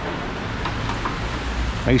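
Steady low background rumble with a few faint clicks, and a man's voice starting right at the end.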